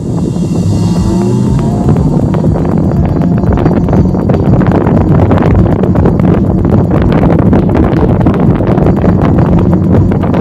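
Wind buffeting the camera microphone while riding an electric motorbike at speed, loud and gusty, with road and tyre noise underneath. A faint rising motor whine can be heard in the first second or so as the bike picks up speed.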